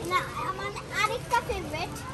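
Speech only: a young girl's voice saying "this is", over a low steady hum of background noise.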